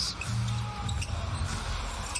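Basketball arena during live play: a low held bass note of arena music over crowd noise, with the ball being dribbled on the hardwood court.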